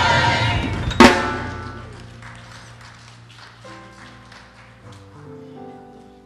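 A gospel choir's final held chord ends with one loud drum-kit hit about a second in, which rings and fades away. Soft keyboard notes follow, held quietly through the rest.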